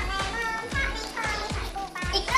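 Background music with a steady fast beat, about two and a half beats a second, under high-pitched voices.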